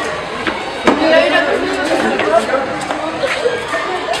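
A group of boys' voices talking and shouting over one another in a scuffle, with a sharp knock about a second in.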